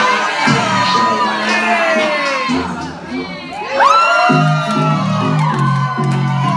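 Crowd cheering and whooping over loud dance music. About four seconds in, a pulsing bass beat comes in under the cheers.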